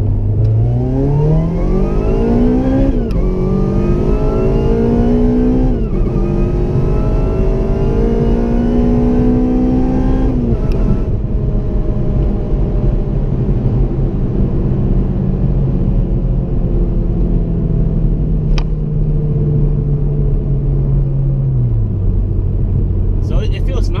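Honda Civic Si four-cylinder engine, heard from inside the cabin, pulling hard through second, third and fourth gears. Its pitch climbs, then drops sharply at each of two quick shifts made without lifting the throttle, where the Hondata tune cuts fuel while the clutch is in. About ten seconds in, after the third climb, the throttle comes off. The engine note sinks slowly as the car coasts, then drops to a lower steady note near the end.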